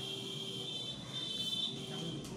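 A steady high-pitched tone, with a fainter low hum beneath it.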